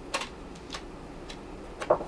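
Pages of a paper crafting pad being flipped quickly, a short papery flick with each page: about four in all, the loudest near the end.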